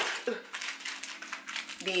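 Crackly clicks and rustles of a plastic-wrapped breakfast biscuit packet being picked up and handled, over a faint steady hum.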